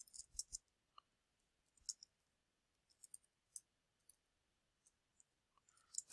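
Faint, scattered clicks from a computer keyboard and mouse, a few taps at a time with short gaps between.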